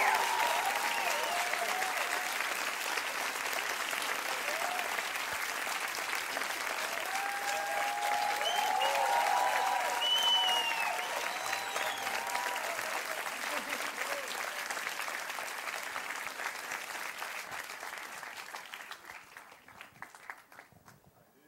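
Audience applauding, with scattered cheers. The applause swells about halfway through and dies away near the end.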